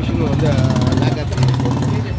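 A motorcycle engine idling close by, a steady low hum with a fast even pulse, under a man's speech.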